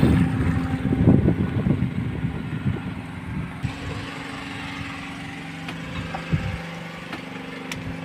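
A boat's engine running steadily at idle, a low even hum, with louder irregular rustling noise in the first two seconds.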